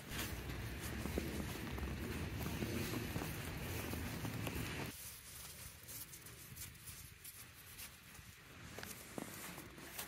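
Faint crunching and handling of wet snow, with a low rough rumble in the first half. About halfway through it drops suddenly to quieter, scattered crunches and light clicks.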